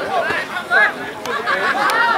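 Several voices of rugby players and onlookers shouting and calling over one another, with no clear words.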